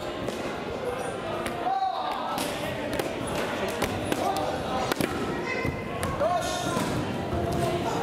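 Echoing voices and shouts in a gymnasium hall, with several sharp knocks and thuds from a sports chanbara bout: air-filled foam swords striking and feet on the wooden floor.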